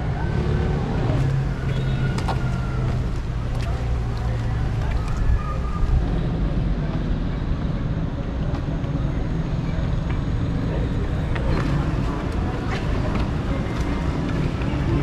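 Outdoor traffic ambience: a steady low rumble of road vehicles, with faint voices and a few light knocks.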